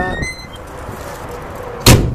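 A single sharp knock near the end as a hand works the latch of a sliding window on an aluminum horse trailer, over quiet background noise.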